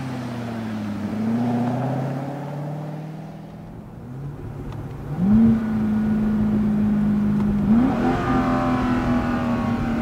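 Chevrolet Corvette C6's 6.2-litre LS3 V8 running: its note falls in pitch in the first second or so, fades around the middle, then climbs about halfway through and holds a steady pitch, stepping up once more a couple of seconds before the end.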